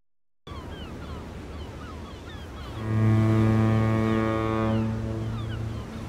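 Sea ambience with a low wash of waves and faint short falling chirps. About halfway through, a ship's horn sounds one long, steady low note for about three seconds and fades slightly before it stops.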